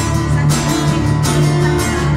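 Acoustic guitar strummed in a steady rhythm, with accented strums about twice a second over a sustained low note.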